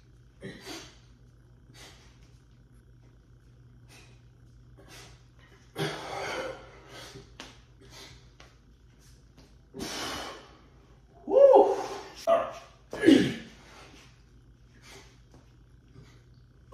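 A man breathing hard in short, breathy puffs while doing push-ups. A few short voiced grunts come between about eleven and thirteen seconds in, the loudest sounds of the stretch.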